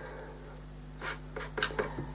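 A stiff-bristled brush dabbing paint onto watercolour paper, making a few soft, short taps over a steady low room hum.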